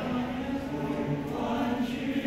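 A boys' school choir singing a Chinese New Year song in chorus, in long held notes that step up in pitch right at the start.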